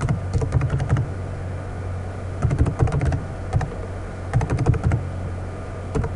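Computer keyboard typing: several quick runs of key clicks with short pauses between them, as a web address is typed in. A steady low hum runs underneath.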